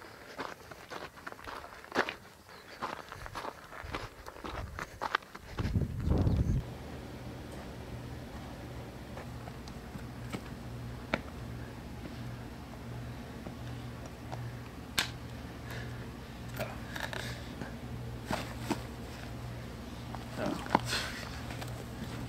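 Footsteps of a hiker on a gravelly dirt road for the first several seconds. A brief low rumble follows about six seconds in, then a steady low hum with occasional clicks.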